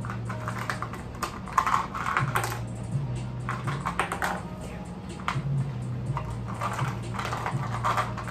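Small plastic lip balm tubes clicking and rattling as they are picked through and handled in a cup, a quick irregular run of light clicks, over low background music.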